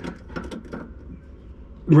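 A short pause in a man's talk: low background noise with a few faint clicks in the first second, then his voice comes back at the very end.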